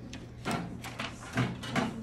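A few light knocks and clatters, roughly four in two seconds, from an ultrasound probe being picked up and handled at the machine's cart.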